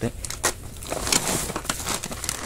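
Plastic packaging crinkling and rustling as bagged and boxed spare parts are handled, with a denser patch of crinkling about a second in.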